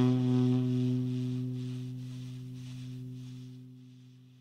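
The closing held note of a jazz quartet's tune, saxophone to the fore, slowly fading out as the track ends.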